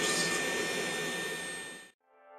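High-speed power carving handpiece running with its bit on the wood, a steady whine over the rushing hum of a dust collector; the sound fades out near the end.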